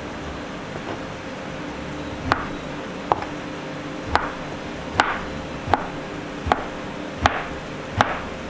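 A knife cutting a block of tempeh on a plastic cutting board: about eight sharp taps of the blade hitting the board. They are sparse in the first two seconds, then come steadily a little faster than one a second.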